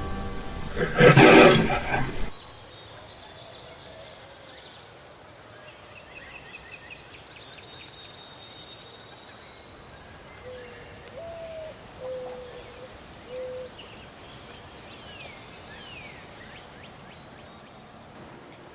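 Music stops within the first couple of seconds, with a loud burst just before it ends. Then quiet outdoor ambience with birds chirping and trilling, a few low cooing notes near the middle, and short gliding calls later on.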